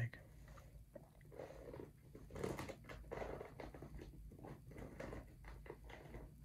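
Fingertips scratching and rubbing over the molded nubs of an adidas CrossKnit DPR spikeless golf shoe's outsole: a faint, crackly scratching that grows louder for a second or so about halfway through.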